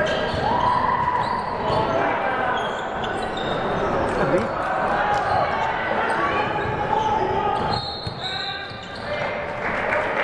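Basketball game in a large gym: players and spectators calling out while a basketball bounces on the hardwood court, with sharp short knocks and the echo of the hall.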